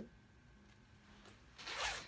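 Short clothing noise from a fleece hoodie being worn and handled: one rasping burst about half a second long near the end.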